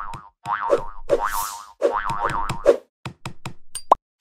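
Cartoon bounce sound effects for an animated logo: a series of springy boings over the first three seconds, then a quick run of short taps and a brief rising tone near the end.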